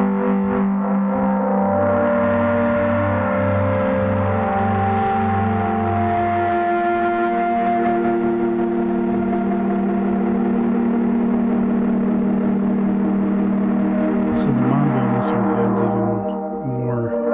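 Omnisphere "Feedback Pad" patch playing sustained chords: a strange, dreamy pad with a rich and heavy tone, its held notes shifting slowly. A low note pulses through the first several seconds, and a few crackles come in near the end.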